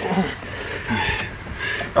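Short, broken vocal sounds from men straining with effort, a few brief voiced noises rather than words.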